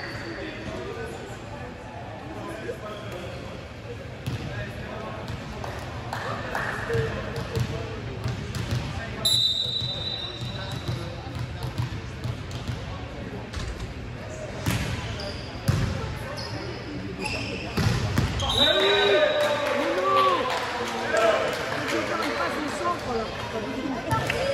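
Indoor volleyball play in a large sports hall: players calling and shouting, with a volleyball struck and bouncing several times in the second half. Two short, high whistle blasts come at about nine seconds and again near nineteen seconds.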